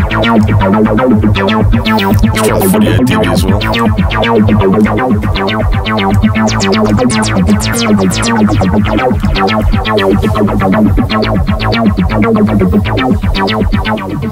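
Softube Modular software Eurorack synth patch playing a rapid run of short, plucky notes, several a second, whose pitch keeps jumping as a sample-and-hold clocked by an LFO steps the oscillator. A steady low note holds underneath.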